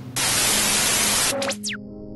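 A burst of TV-style static hiss lasting about a second, then a few quick falling whistle-like sweeps as it cuts out: a glitch transition sound effect.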